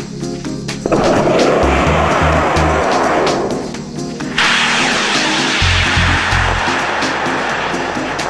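Background music with a repeating beat over two sudden rushing hisses of a model rocket motor firing: one about a second in that fades within a couple of seconds, and a louder one about four and a half seconds in that fades slowly as the rocket climbs.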